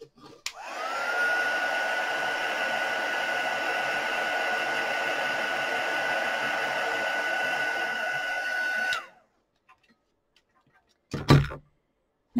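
Handheld hot-air drying tool, switched on with a click about half a second in. Its fan rises to a steady whine over rushing air as it dries a wet watercolour layer, then it cuts off after about eight seconds. A single knock follows near the end.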